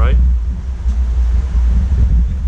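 A steady low rumble, with the last word of a man's sentence at the very start.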